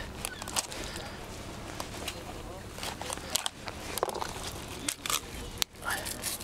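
Short clicks and scrapes of a fillet knife and gloved hands working a cod on a plastic cutting board, over a low steady rumble, with faint indistinct voices now and then.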